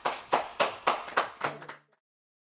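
A short run of evenly spaced hand claps, about three to four a second, that cuts off suddenly.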